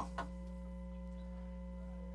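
Steady electrical mains hum from the sound system, with the end of a spoken word just at the start.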